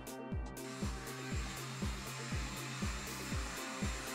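Hair dryer blowing steadily over a freshly painted canvas to dry the paint, coming on about half a second in. Underneath runs electronic background music with a steady kick-drum beat.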